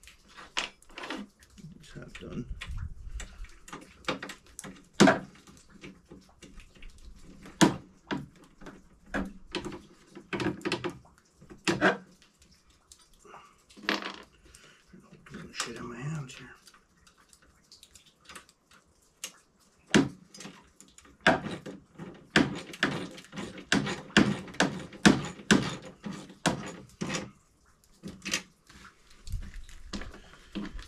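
Small metal hardware clinking and clicking as washers and bolts are handled and fitted to a chainsaw holder's mounting brackets on a snowmobile, with a quick run of regular clicks in the last several seconds.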